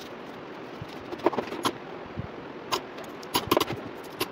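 Loose coins clicking and clinking against each other and a drawer bottom as they are gathered by hand into a small plastic cup. The clinks come in scattered clusters from about a second in and are busiest near the end.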